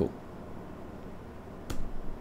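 Quiet room tone, then a single sharp click near the end as the next diagram is brought up on screen.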